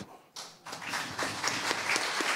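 Applause that starts about half a second in and builds.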